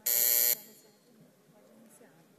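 Electronic buzzer in a legislative chamber sounding once, a loud steady buzz of about half a second with a short ring after it, signalling the close of the electronic roll-call vote.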